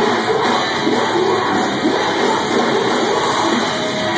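Live metalcore band playing loud through a club PA, with the crowd shouting along over the music.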